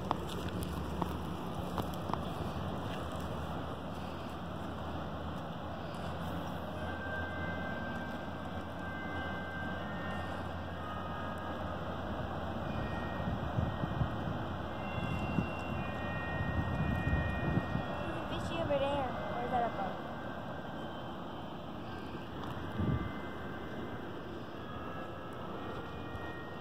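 Steady outdoor background noise beside a stream, with wind rumbling on the microphone around the middle and faint voices in the distance.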